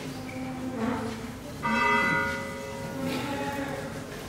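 Church bell struck about one and a half seconds in, ringing with a steady, many-toned hum that slowly fades, in a pause between phrases of Byzantine chant.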